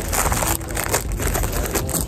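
Packaging being crinkled and rustled by hand as a package is unwrapped, an irregular run of crackling rustles.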